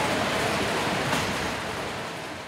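Steady running noise of a melon sorting conveyor line, with a single click about a second in.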